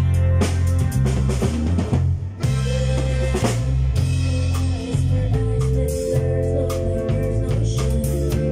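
A live band playing: drum kit hits with snare and cymbals over an electric bass line, with sustained higher notes joining about five seconds in.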